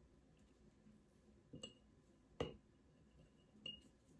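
A metal measuring spoon clinking lightly against a glass mason jar three times, each clink with a short high ring; the middle one is the loudest.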